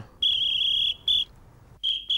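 A cricket chirping: a steady high-pitched trill in bursts, one lasting most of a second, then a short one, and another starting near the end.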